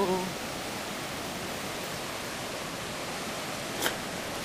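Steady rush of a flooded river pouring through whitewater rapids, with one brief click near the end.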